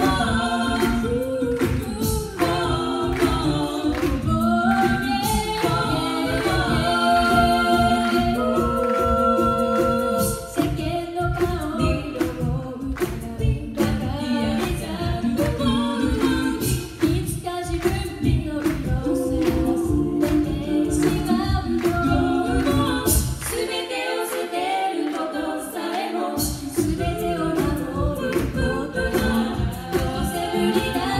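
A female a cappella group singing in parts through microphones, with a low bass voice and vocal percussion keeping a steady beat. The bass and beat drop out for about two seconds late on, then come back in.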